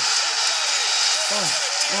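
Football stadium crowd roaring steadily as a goal goes in. A man's voice shouts over it near the end.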